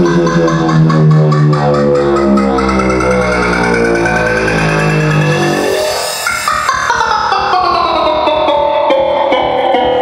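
Electronic dance music from a DJ set, loud with a fast beat and a heavy bass line. About five and a half seconds in the bass drops out and a pitched sound slides downward.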